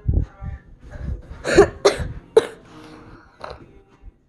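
A child coughing: three sharp coughs in quick succession about a second and a half in, and a weaker one near the end. Soft low thuds come before them.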